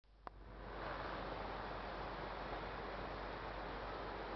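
A steady hiss of background noise under a low constant hum, with a single click just after the start; the hiss builds up over the first second and then holds level.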